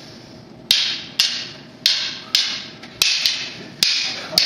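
Kali fighting sticks clacking against each other in sparring, seven sharp irregular strikes, each with a short ringing tail in the room.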